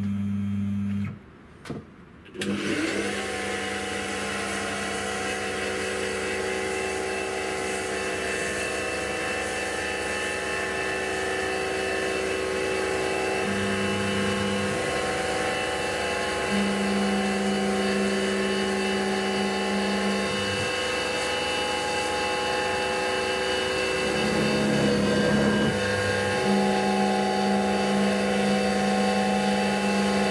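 Grizzly G8689Z CNC mini mill's spindle running while a pointed cutter machines an aluminium plate: a steady whine with many fixed tones, joined by a lower hum that comes and goes several times as the axes move. The sound drops out briefly about a second in.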